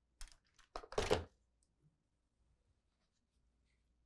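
Quiet handling sounds from pressing and arranging quilt pieces: a couple of light clicks, then a short rustle of fabric about a second in.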